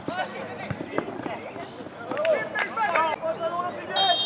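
Footballers shouting and calling to each other on the pitch, with a few sharp thuds of the ball being kicked in the first second. The calls are loudest a couple of seconds in.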